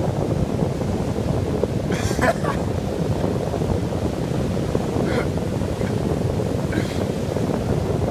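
Wind buffeting the microphone in a steady low rush, over waves breaking on a beach.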